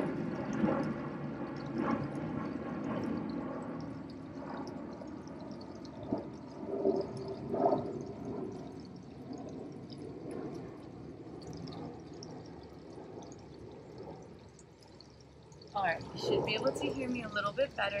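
Airplane passing overhead, a steady drone that slowly fades away until it is gone.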